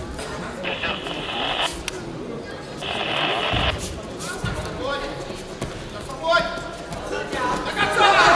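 Shouting voices of coaches and spectators echoing in a large sports hall during a judo bout.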